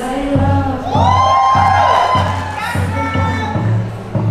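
Live electronic-pop performance: a female singer holds a long high note over a steady bass beat, while the audience cheers.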